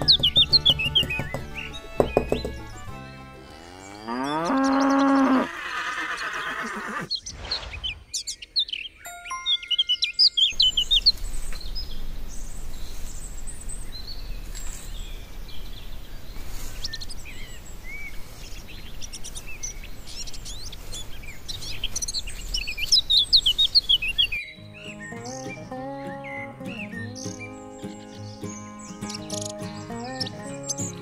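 Birds chirping through most of the stretch, with one long cow moo about four seconds in. Background music with held tones takes over near the end.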